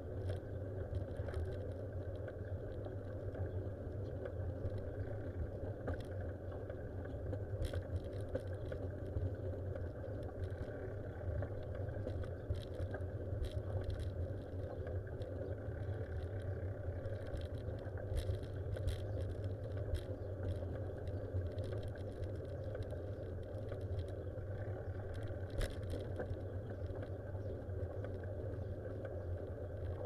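Steady low rumble and road noise from the moving vehicle carrying the camera, with scattered light clicks and rattles.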